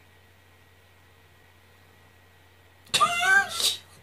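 Near silence, then near the end a high-pitched human voice, a squeal or laugh, for about a second, its pitch rising and falling.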